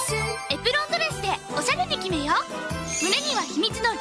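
Upbeat children's commercial jingle with a steady bass line and bright chimes, with a high, sing-song voice sliding up and down in pitch over it.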